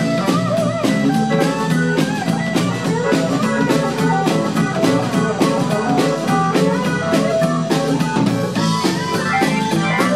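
Live blues band playing an instrumental 12-bar blues in E on electric guitars, bass and drum kit, with a steady beat. A lead line of sustained, bending notes runs over the band.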